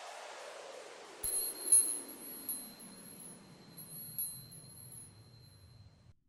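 Intro logo sound effect: a sweep sinking in pitch and fading away, with high, sparkling chime strikes, several and irregularly spaced, ringing over a thin steady high tone from about a second in.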